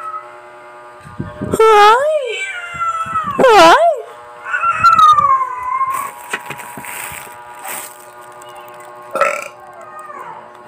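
Cat meowing loudly three times in the first six seconds, each call rising and falling in pitch, the last one longer and sliding down; a short call follows near the end. Crackling plastic-bag rustle comes in between.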